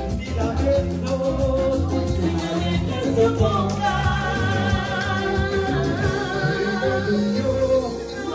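Live band playing Latin music, with singing over keyboard, guitars, violin and percussion.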